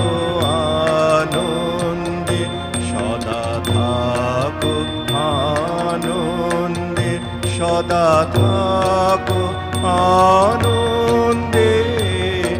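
A male voice singing a slow song with long held, ornamented notes, accompanied by sustained electronic keyboard chords and small hand cymbals ticking out the beat.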